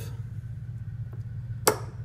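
A single sharp click from handling the current-balance apparatus on the bench, most likely the double-pole switch, about three-quarters of the way through, over a steady low hum.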